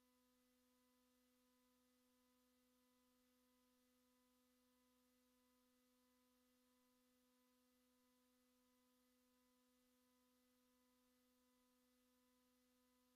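Near silence: only a very faint, steady hum of a few held tones.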